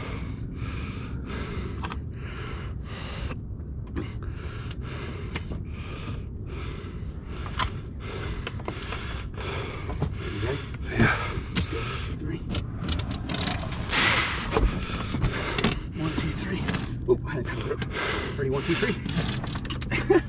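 A man breathing hard in short, rapid gasps, straining to hold down a large alligator. Knocks and scuffles on the boat deck follow in the second half.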